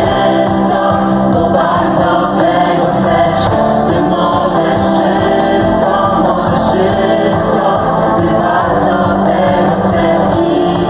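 A vocal quartet of two young men and two young women singing together through microphones, with live band accompaniment. The music runs loud and steady.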